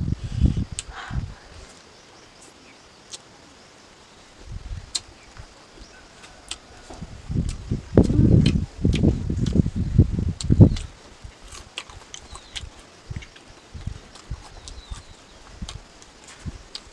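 Close-miked open-mouth chewing and lip smacking of a mouthful of rice and pickle, loudest about halfway through, with small wet mouth clicks scattered through the rest.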